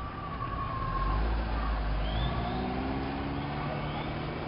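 Street traffic: a motor vehicle engine running with a low rumble, rising slowly in pitch in the second half as it speeds up, with a fainter higher tone early on that falls slightly and fades.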